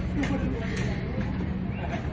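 Steady low rumble of an idling vehicle engine, with indistinct voices in the background.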